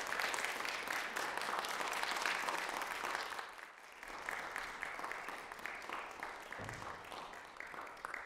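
Audience applauding. The clapping eases a little over three seconds in, then picks up again slightly quieter and carries on.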